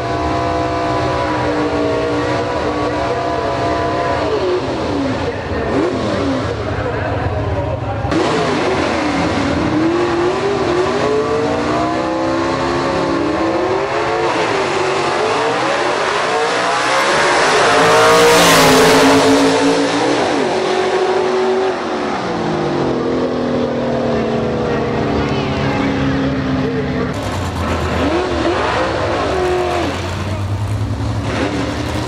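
Gasser-style drag cars' engines revving at the starting line, then two cars launching side by side and running down the strip. They are loudest as they pass, about two-thirds of the way through, and their pitch drops as they pull away. Near the end another car's engine runs at the line.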